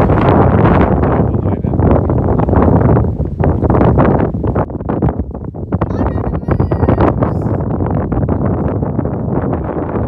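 Wind buffeting the microphone: a loud, gusting rumble that rises and falls, with a few faint high-pitched sounds about six to seven seconds in.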